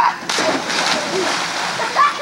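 Two children jumping off a diving board together and hitting the pool water with a big splash about a third of a second in, then the water churning and sloshing as it settles.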